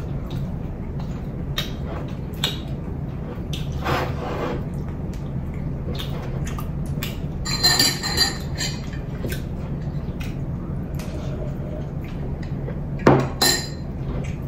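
Eating at a table with bare hands from ceramic plates: fingers scraping and tapping the plates, with scattered clinks of dishes. A ringing clink comes about eight seconds in and the loudest knocks about a second before the end, over a steady low hum.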